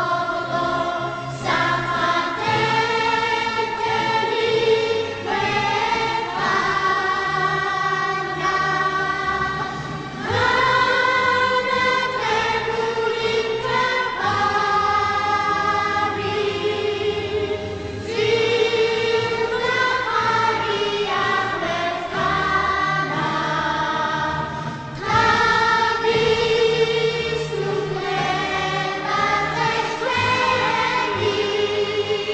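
A choir singing slow, held chords, the harmony shifting every couple of seconds, with short breaks between phrases.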